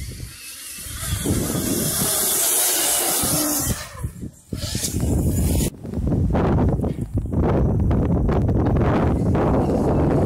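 Electric motocross motorcycle passing with a high hissing whine, which cuts off suddenly a little past halfway; after that, wind buffeting the microphone.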